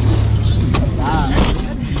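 Minibus engine and road noise heard from inside the passenger cabin, a steady low rumble, with a person's voice briefly over it about a second in.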